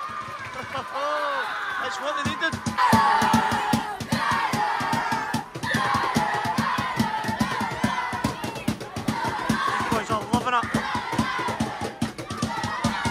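A group of young football supporters chanting and singing together. About two seconds in, a fast steady beat of about four strikes a second starts under the singing.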